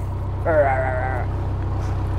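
A man gives one drawn-out vocal sound held at a nearly level pitch for under a second as his beard is tugged. Under it runs the steady low throb of the narrowboat's engine.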